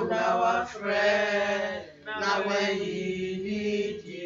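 A man singing long, held notes in a slow, chant-like line, in about three phrases, with short breaths between them.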